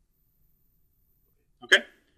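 Near silence, then a man briefly says "okay" near the end.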